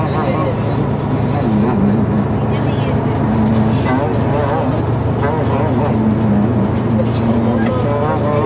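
A man talking into a handheld microphone, his voice carried over the coach's speakers, with the steady low drone of the coach's engine and running noise underneath.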